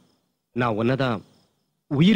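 Only speech: a man calls out one short drawn-out word about half a second in, with silence before and after.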